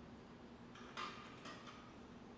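A few light clicks from a French horn being handled, the loudest about halfway through and two softer ones just after, over a faint steady hum.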